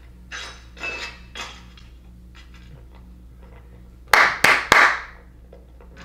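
Sharp impact sound effects from the anime episode playing: a few faint taps in the first second and a half, then three loud, sharp knocks in quick succession just after four seconds in.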